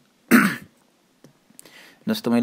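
A person clears his throat once, briefly, about a third of a second in.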